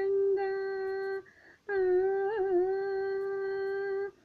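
A woman humming without accompaniment: two long, steady held notes with a short pause between them.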